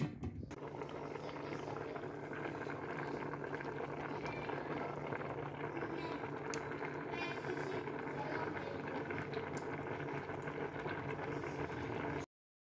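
A large pot of bean and vegetable soup at a steady boil, the water bubbling evenly throughout.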